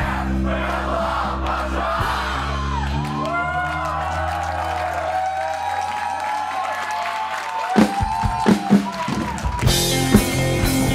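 Live rock band in an instrumental break: sustained bass and guitar notes over a cheering crowd, then sliding guitar notes. Drum hits come in about eight seconds in and build back up, with the full band kicking in just before the end.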